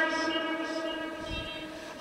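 Lingering echo of a man's chanted voice through a public-address loudspeaker system: a steady held tone at the pitch of his last note, fading away over about two seconds.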